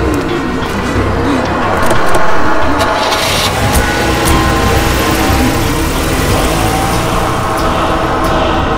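An SUV's engine running, under a tense music score.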